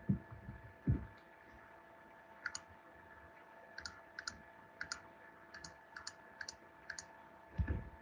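Computer mouse clicking, about a dozen short sharp clicks in quick succession, some in close pairs, starting about two and a half seconds in, as buttons are pressed on an on-screen calculator. A faint steady hum lies underneath.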